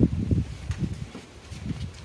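Soft rustling and low bumps of a handheld phone being moved, strongest at the start and fading to a faint rustle within the first second.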